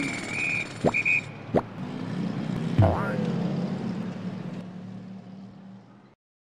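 Sound effects of an animated logo intro: a high steady tone in two short pieces, two sharp clicks, a swoosh about three seconds in, then a low steady hum that fades out near the end.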